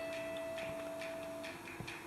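Quiet room tone with a faint steady electrical hum; one of the hum's tones drops out about one and a half seconds in.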